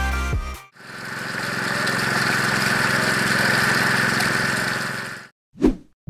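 Background music ending in the first half second. A steady buzzing noise then swells in, holds for about four seconds and fades out, followed by a short whoosh just before the end, as an editing transition effect.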